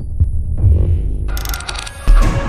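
Low, throbbing pulses from an edited film-style sound effect, joined about one and a half seconds in by a sudden bright, harsh burst.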